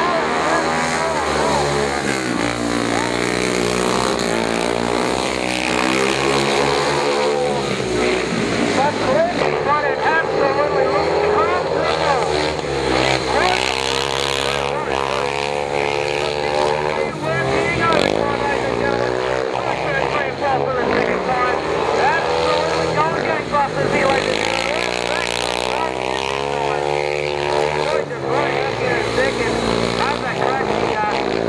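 Speedway motorcycles' 500cc single-cylinder engines racing round the track, their pitch rising and falling again and again as the riders open up on the straights and shut off into the bends.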